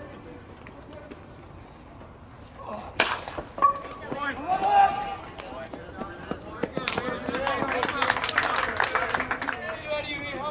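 A metal baseball bat striking a pitched ball with a sharp crack about three seconds in, followed by voices shouting from the field and stands.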